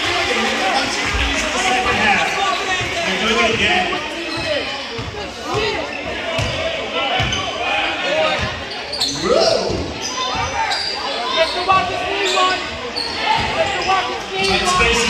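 A basketball being dribbled on a hardwood gym floor, with repeated bounces, over the steady chatter of spectators.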